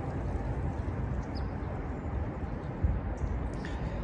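Steady outdoor background rumble and hiss, heaviest in the low end, with a single soft knock a little under three seconds in.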